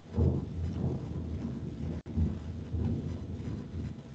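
Low, rumbling noise on a microphone, fluctuating throughout and cutting out briefly about halfway.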